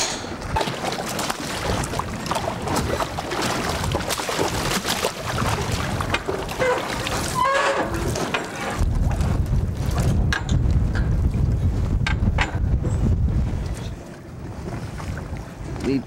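Water splashing and sloshing as a landing net is dipped into a net pen of steelhead and lifted out streaming water, with fish thrashing at the surface. From about halfway in, a heavy low rumble of wind on the microphone takes over.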